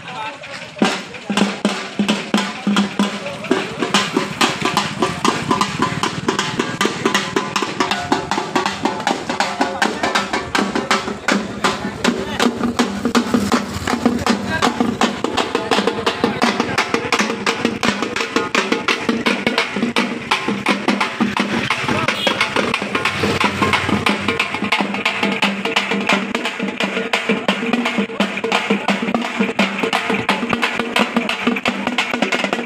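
Dappu frame drums beaten by hand in a fast, steady rhythm, starting about a second in, with a group of voices along with them.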